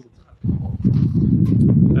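Low, irregular rumble of wind buffeting a handheld microphone, starting about half a second in and staying loud.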